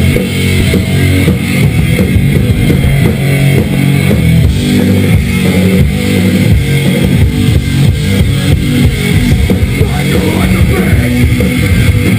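Live rock band playing loud: electric guitars, bass and dense drumming without a break, heard from a camera worn in the crowd in front of the stage.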